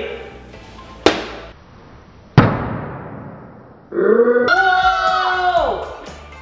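Two sharp impacts about a second and a half apart, each fading out slowly: a slime-filled Wubble ball thrown against the wall. From about four seconds in comes a held musical sting whose notes slide down near the end.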